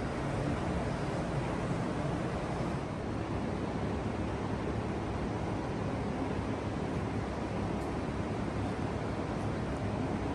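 Steady rumbling background noise with a faint low hum and no distinct events: the room tone of a large hall, picked up on a phone microphone.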